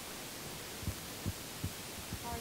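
Steady hiss of room tone with three soft, low thumps in quick succession about a second in.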